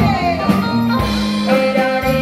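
A small live band playing, with drums, saxophone and keyboard, while a man and a woman sing a duet into microphones; a falling slide in pitch comes in the first second.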